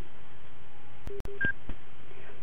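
Steady background hiss of the recording, with a few faint clicks and two brief beeps a little over a second in, a low one followed by a higher one.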